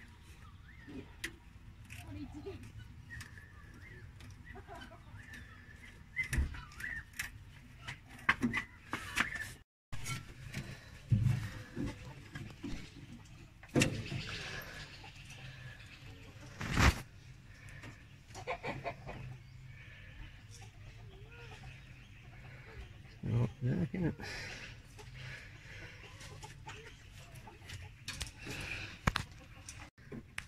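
Hand tools knocking and clinking against metal fittings and hoses in a car's engine bay as a hose and transmission-line fitting are undone, in scattered sharp knocks.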